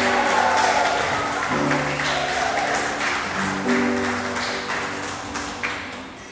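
Audience clapping after a children's violin piece, over held instrumental notes. The clapping thins out near the end.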